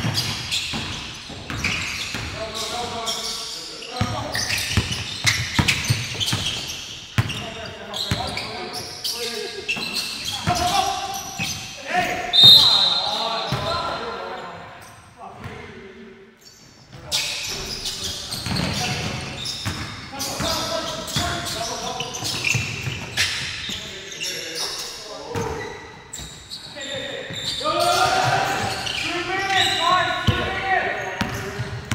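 Basketball game in an echoing gym: a ball bouncing on the hardwood court amid players' shouts. A short, loud, shrill whistle blast about twelve seconds in stops play, typical of a referee's whistle.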